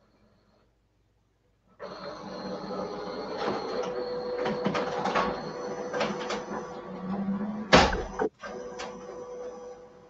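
Office copier starting up about two seconds in and printing a copy: a steady whir with paper-feed clicks, one loud clack near eight seconds, then quieter running.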